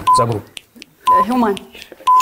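Game-show countdown timer beeping once a second, a short high beep heard twice, with people talking over it.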